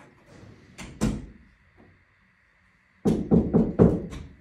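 A visitor knocking on a wooden door: one thump about a second in, then four quick, loud knocks near the end, about four a second.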